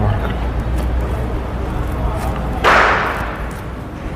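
A low steady hum, with a sudden loud whoosh about two and a half seconds in that fades away over about a second.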